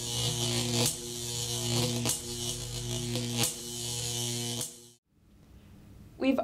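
An electric buzz, steady in pitch, in four pulses of about a second each that cuts off suddenly about five seconds in.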